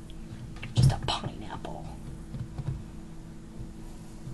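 Soft handling sounds as canned pineapple rings are pressed into a metal baking pan over a sticky brown-sugar caramel, with a sharp knock about a second in and a few lighter clicks after it, over a low steady hum.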